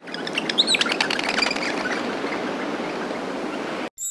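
Outdoor ambience sound effect: birds chirping and tweeting, mostly in the first second and a half, over a steady rushing background. It cuts off suddenly just before the end.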